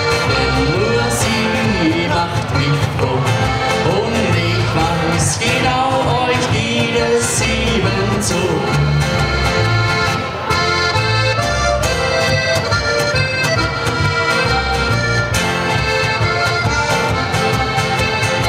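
Diatonic button accordion (Steirische Harmonika) playing an instrumental passage of a Bavarian folk song, with its bass notes keeping a steady beat, accompanied by strummed acoustic guitar.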